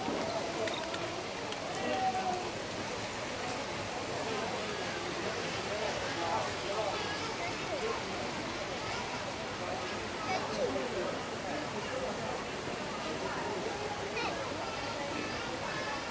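Indistinct chatter of several people's voices, no words clear, over a steady background wash of noise.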